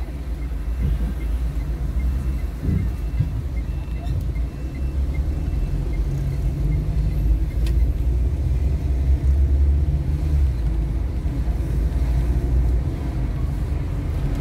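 Car engine and road noise heard from inside the cabin: a steady low rumble that grows louder partway through as the car drives off and turns. An even ticking in the first few seconds is the turn signal.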